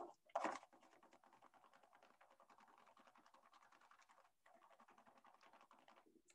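Faint, rapid scratching of a pencil rubbed back and forth across paper laid over a kitchen grater, with a brief pause about four and a half seconds in.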